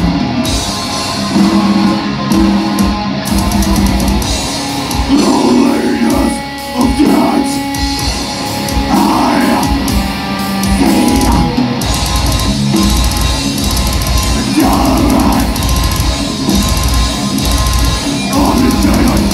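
Heavy metal band playing live: distorted electric guitars and a drum kit, with a vocalist singing over them at intervals.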